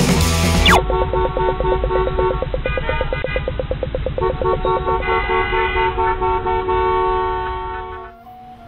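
Title-sequence soundtrack: the rock music drops out with a quick falling sweep about a second in. Several held, horn-like tones follow over a fast, even pulse, with a short break midway, then fade out near the end.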